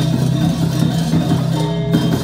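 Balinese gamelan ensemble playing: bronze metallophones struck in many quick notes over a steady low ringing.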